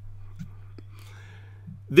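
A pause between speech: a steady low hum with a single faint click a little under a second in and a soft breathy noise after it. A voice starts speaking right at the end.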